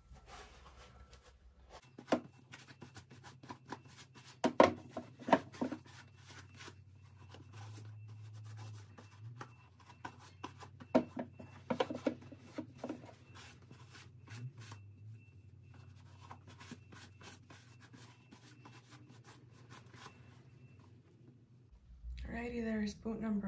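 Cloth wiping and rubbing a damp Red Wing Silversmith boot of Copper Rough and Tough leather: a run of soft scuffs and strokes, with a few louder knocks and rubs as the boot is handled.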